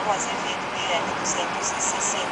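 Steady road and engine noise inside a moving car's cabin, with faint speech over it.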